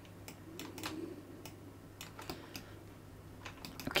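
Faint, scattered clicks of a computer keyboard and mouse, a few sharp taps spread unevenly over a low steady hum.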